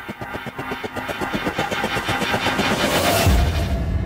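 Film-studio logo sting: a rapid train of pulses that quickens and grows louder into a bright rising swell, then a deep boom hits about three seconds in and carries on.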